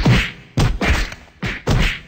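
Staged-fight punch sound effects: four sharp whacks in quick succession, each hit fading out briefly.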